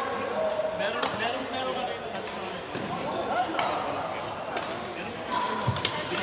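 Badminton rackets striking a shuttlecock in a doubles rally: several sharp hits, about a second apart, in a large indoor sports hall with voices from the other courts in the background.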